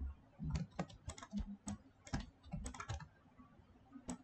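Computer keyboard keys clicking in quick, irregular clusters, stopping about three seconds in.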